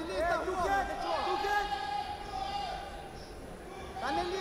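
A person shouting, then one long drawn-out shout held for about two seconds that fades away, echoing in a large hall.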